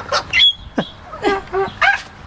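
A white cockatoo calling: a string of short squawky calls, with a brief high whistle and a steeply falling note about a second in.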